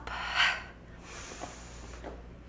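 A woman's forceful exhale about half a second in, breath pushed out with the effort of a step-up onto a box, then faint breathing.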